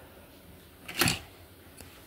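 Quiet room tone with one short, sharp sound about halfway through.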